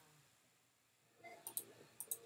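Near silence, then a few faint computer mouse clicks in the last part as items are picked from a right-click menu to copy.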